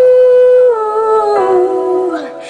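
A singing voice holding a long wordless note, then stepping down in pitch twice, in a slow pop ballad.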